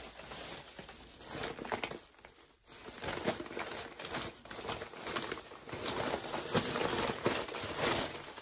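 Thin plastic bag crinkling and rustling as it is handled and pulled away from a wrapped object, with a short lull about two seconds in.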